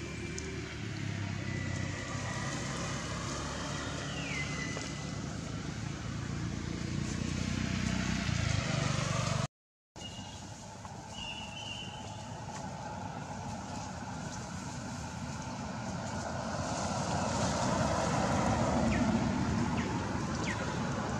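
Steady outdoor background rumble and hiss, with a brief cut to silence about halfway through and a few faint high chirps.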